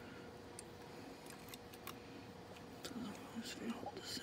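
Small faint clicks and taps of multimeter test probes being moved against the metal pins of a Hubbell plug, over a faint steady hum, with quiet muttering near the end.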